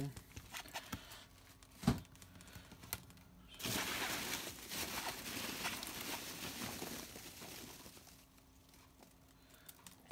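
Foam packing peanuts rustling as a hand digs through them in a polystyrene box, starting about four seconds in and dying away about eight seconds in. A single sharp knock comes just before two seconds.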